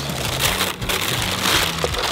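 Tissue paper and wrapping paper crinkling and rustling as a pair of football cleats is unwrapped from a shoebox.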